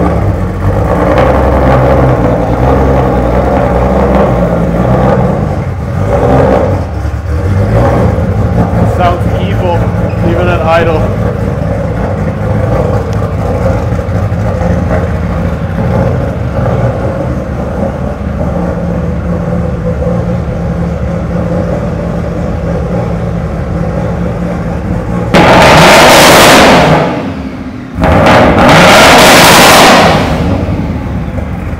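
Big-turbo Toyota Supra engine idling steadily. It is blipped twice, loudly, near the end.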